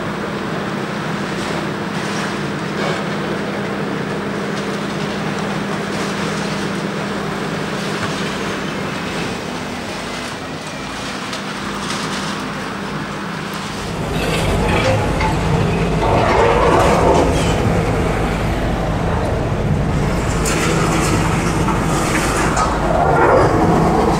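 Demolition excavator running steadily while its hydraulic concrete crusher chews through a car-park wall, with occasional crunching of concrete and debris falling. About fourteen seconds in, a louder, deeper rumble takes over.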